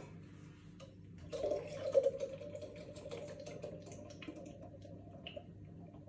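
Beer poured from a can into a glass, starting about a second in and trailing off over the next few seconds.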